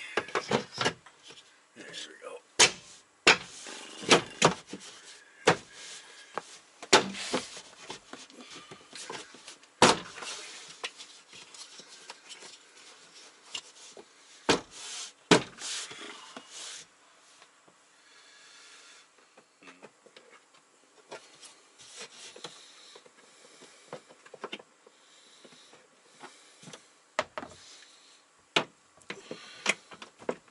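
Hard plastic shelf panels knocking and clicking against a plastic cabinet as they are fitted into place, busiest in the first half and sparser later.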